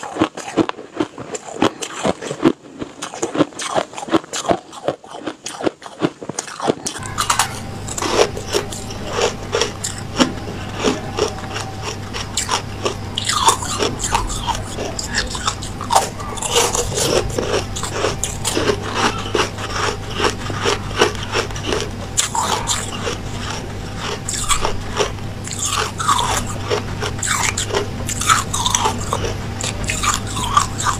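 Close-miked crunching and chewing of white ice, dense crisp bites one after another. About seven seconds in the ice changes from fluffy frost-like ice to pressed ice cubes, and a steady low hum joins underneath.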